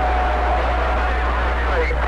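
CB radio receiver's speaker giving off band hiss and a low steady hum, with a steady mid-pitched whistle held for most of the time that fades out near the end.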